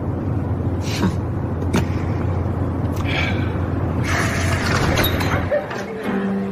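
Car engine idling, a steady low hum heard inside the cabin, with a few faint clicks; the hum cuts off about five and a half seconds in.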